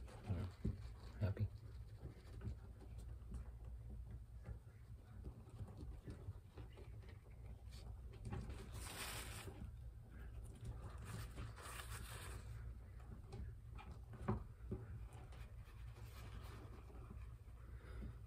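Faint rustling and handling noises of hands and a paper towel working over a small animal, with two longer hissy rustles about nine and twelve seconds in, over a low steady room hum.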